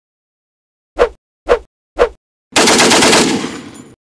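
Gunfire sound effect: three sharp single shots half a second apart, then a burst of rapid automatic fire lasting about a second and a half that fades and cuts off.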